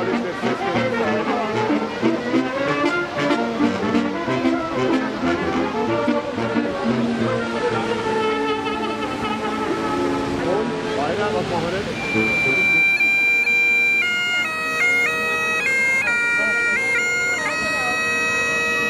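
Music for about the first twelve seconds, then a sudden change to Highland bagpipes: steady drones under a chanter melody stepping from note to note.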